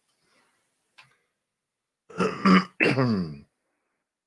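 A man clearing his throat: two loud rasping pushes about two seconds in, the second ending in a voiced tone that slides down in pitch.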